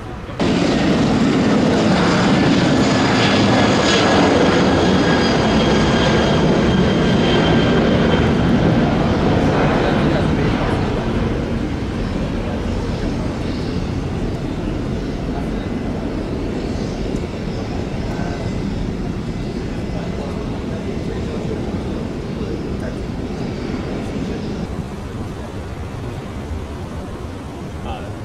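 Jet airliner's engines at takeoff power: a loud, steady roar with a high whine over it, which begins suddenly and fades gradually from about ten seconds in as the EVA Air twin-jet climbs away.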